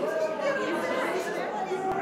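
Several people chatting at once in a large room, overlapping conversation with no single voice standing out. A short click comes near the end.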